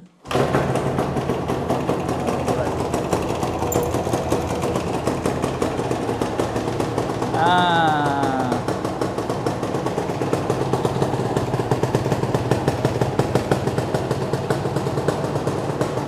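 Yamaha TZM 150 two-stroke engine kick-started, catching on the first kick just after the start and then running steadily with a fast, even train of exhaust pulses. It starts this readily because its carburettor is set with a larger pilot jet for easy starting.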